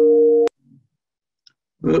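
A steady electronic tone of two notes sounding together, which cuts off abruptly about half a second in and leaves near silence.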